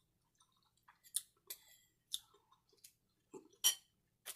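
A person chewing a mouthful of chicken tortilla soup close to the microphone: a string of short, wet mouth clicks and smacks, the loudest near the end.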